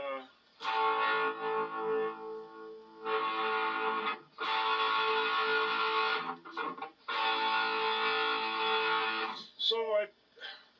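Distorted electric guitar sounding a held A three times, each ringing for two to three seconds with short breaks between, as the tuning is checked by ear against a record.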